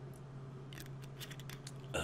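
A man gulping from a glass bottle: a quick run of short, clicky swallows over about a second, then a breath out near the end, over a low steady hum.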